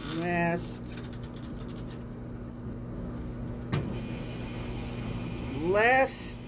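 Washing machine's mechanical timer dial being turned by hand, clicking in a quick run of small ratchet clicks over a steady low hum, with a single knock near the middle.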